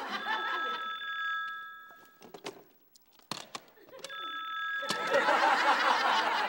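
An old desk telephone's mechanical bell ringing, a ring of about two seconds, then a shorter ring about four seconds in, followed by loud laughter.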